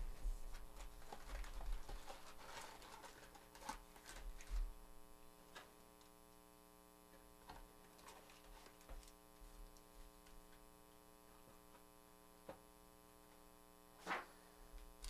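A cardboard trading-card hobby box being opened and handled: soft rustles and small knocks in the first few seconds, then a few faint taps over a steady electrical hum. A sharper knock comes at the very end.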